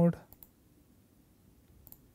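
A few faint computer mouse clicks: a couple just after the start and a quick pair near the end, as settings are picked from a dropdown menu.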